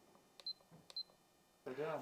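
Handheld digital vibration meter giving two short, high beeps about half a second apart, each with a faint click.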